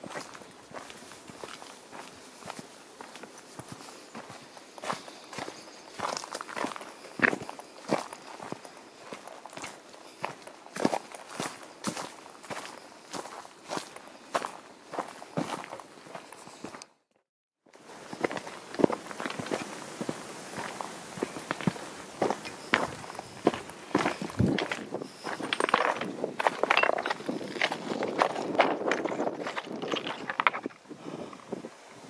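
Footsteps of a hiker walking at a steady pace on a dry, stony trail, each step a short crunch. The steps break off in a brief silence just past halfway, and over the last few seconds they crunch louder and more densely on loose rock.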